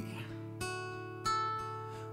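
Acoustic guitar playing softly on its own, chords ringing out, with a fresh strum about half a second in and another just over a second in.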